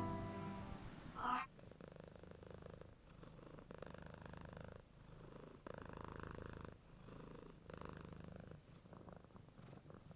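A domestic cat purring quietly in a steady rhythm, each in-and-out breath of the purr lasting about a second.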